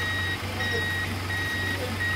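Vehicle reversing alarm beeping a steady high tone, about three evenly spaced beeps in two seconds, over a steady low hum.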